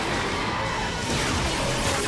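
Action background music under a sustained, noisy energy-blast sound effect as a glowing attack strikes its target.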